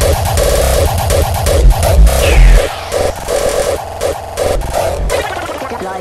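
Fast splattercore hardtekk electronic music at about 165 BPM: pounding heavy kick drums with rapid stuttering synth stabs. The kicks thin out about two and a half seconds in, leaving the stabs.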